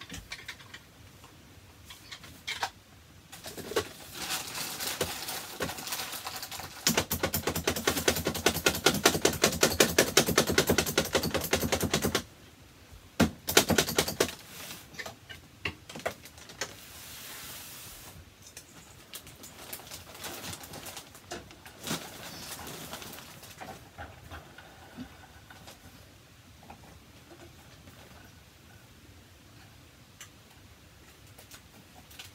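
A rapid string of sharp pops for about five seconds, then a few scattered single pops.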